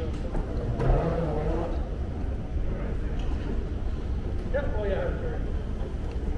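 Airport terminal background: a steady low rumble with snatches of voices nearby, once about a second in and again near the end.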